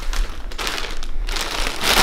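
Yellow plastic mailer bag crinkling and rustling as it is lifted and handled, in uneven surges that are loudest near the end.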